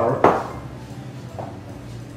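A single sharp knock of a utensil against a glass mixing bowl, then quiet stirring as flour is worked into chocolate cake batter.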